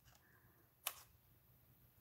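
Near silence with a single short, sharp click a little under a second in.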